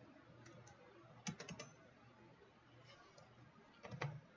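Faint clicks from computer input at the desk, mouse or keys: a quick run of about four clicks about a second in and a couple more near the end, over a faint low hum in a near-silent room.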